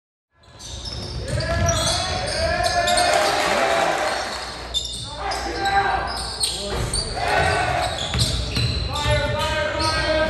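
Basketball bouncing on a hardwood gym floor during game play, with indistinct shouts and chatter from players and spectators; the sound begins a moment after a brief silence.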